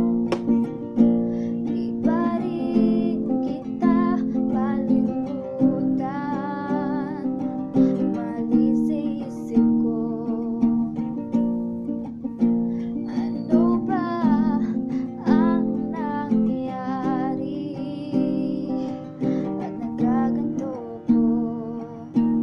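Acoustic guitar strummed in a steady rhythm, chord after chord, with a woman's voice singing along.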